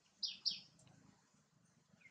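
A bird chirping twice in quick succession: two short notes, each falling in pitch, about a quarter second apart.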